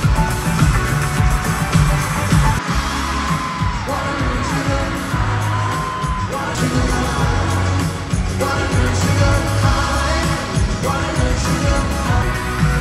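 Live pop music played by a band with drums and guitar, with a singer holding long, gliding notes, heard in an arena.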